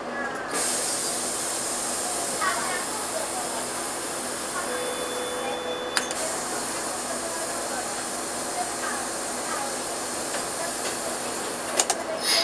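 A loud, steady hiss inside a Karosa B731 city bus, typical of air escaping from the bus's compressed-air system, starts abruptly about half a second in. A short steady tone sounds about five seconds in, followed by a sharp click, and a few clicks come near the end.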